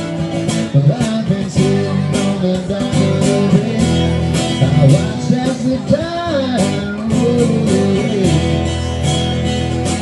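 Live music on electric-acoustic guitar: steady strumming with a melody line that bends in pitch, played loud through a PA.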